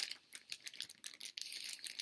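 Plastic mailing bag crinkling, a quick irregular run of small high crackles as fingers pick and pull at it.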